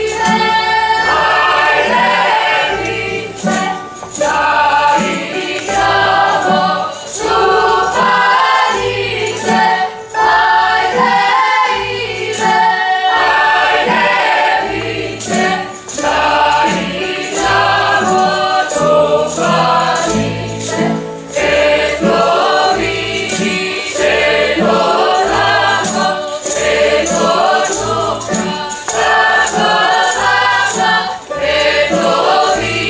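Croatian folk song sung in chorus over a tamburica string band, with a plucked bass marking a steady beat under bright strummed strings.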